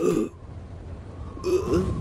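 Short wordless vocal sounds from a cartoon character: a brief grunt at the start, then a couple of quick gliding mumbles about one and a half seconds in.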